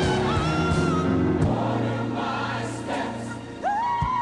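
Gospel music with choir singing: held, wavering sung notes over bass and drums. The backing thins out about a second and a half in, and a new long note swoops up near the end.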